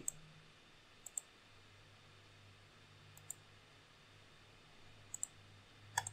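Computer mouse clicks: three faint pairs of short clicks about two seconds apart, with another near the end, over a faint low steady hum.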